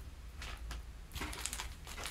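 Quiet handling noises of small plastic packets being picked up and set down on a cutting mat, with a soft rustle a little after a second in.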